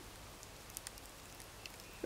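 Faint quiet outdoor ambience with a few light ticks and crackles from a smouldering burn pile of hot coals.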